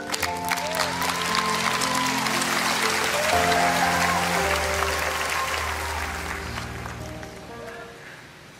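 Theatre audience applauding over soft, sustained background music. The applause is fullest in the first few seconds and fades away toward the end, leaving the held music notes.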